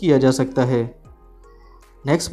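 A man's voice for about the first second, ending on a drawn-out syllable, then about a second of faint background music.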